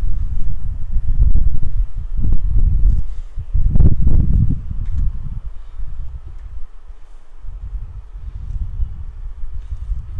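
Wind buffeting the microphone: a loud, low rumble that gusts and eases, quieter around the middle and picking up again near the end.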